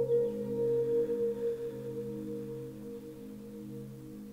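Meditation background music: several sustained low ringing tones, like a singing bowl's, that slowly fade.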